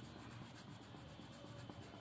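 Faint scratching of a grey colouring pencil rubbed back and forth on paper, shading in a picture.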